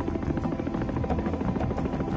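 Helicopter rotor chop, rapid and steady, with background music underneath.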